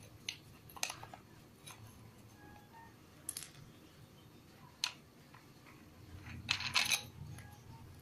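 Scattered light clicks and metallic clinks of an abrasive disc and flange being fitted by hand onto an angle grinder's spindle, with a quick run of sharper clinks near the end.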